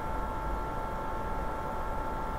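Steady background noise of the recording: an even hiss with a faint, constant high tone running through it, and no distinct sound event.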